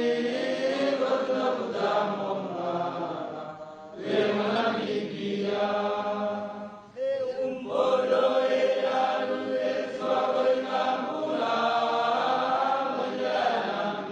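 A large group of voices chanting in unison, a sung slogan repeated in long phrases with short breaks about four and seven seconds in.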